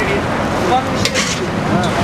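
A steady, loud rumbling noise from a burning hay store being fought, with men's voices shouting over it and brief hissing bursts about a second in.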